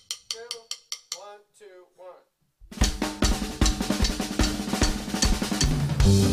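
A string of light sharp clicks, then a drum kit comes in just under three seconds in, playing a dense run of snare, bass drum and cymbal hits.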